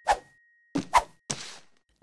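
Cartoon sound effects of small objects being dropped into cardboard boxes: a sharp hit at the start, then a quick pair of hits about a second in and a softer one with a short fading tail.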